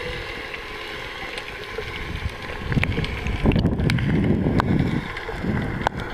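Underwater sound of a freediver swimming with the camera: a steady hiss of water, then from about halfway louder rushing and low rumbling of water moving against the camera, with a few sharp clicks.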